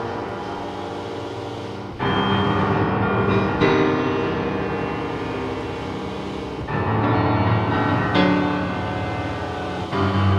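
Upright piano played slowly, with full chords struck about four times, at irregular gaps, each left ringing and slowly fading before the next.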